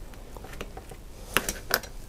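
A few light, sharp clicks of a hex screwdriver and small metal parts being handled against a gimbal adapter arm on a workbench mat, three of them close together in the second half.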